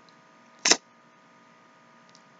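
A single brief, sharp click-like sound less than a second in, over a faint steady electrical hum in a quiet room.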